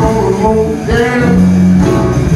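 Live band music: electric guitar, acoustic guitar and drums playing together, loud and steady.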